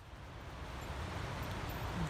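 Steady outdoor noise, mainly a low rumble of wind on the microphone, fading in gradually after a silent cut.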